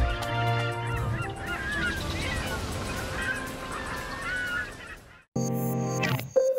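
A flock of water birds calling, many short overlapping calls, over a soft background music bed that fades out about five seconds in. A new music cue of held electronic tones starts just after.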